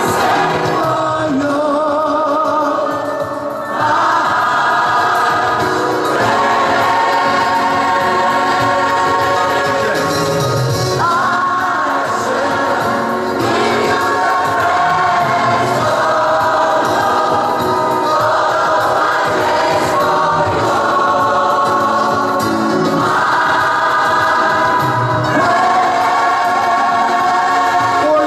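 Large mixed gospel choir singing in a cathedral, holding long chords that change every few seconds.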